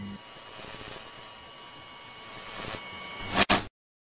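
Edited-in rushing-noise sound effect that swells slightly, ends in two sharp hits near the end, then cuts off abruptly.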